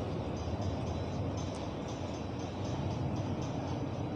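Steady background noise of a large hall between spoken passages: an even low rumble and hiss with a faint hum.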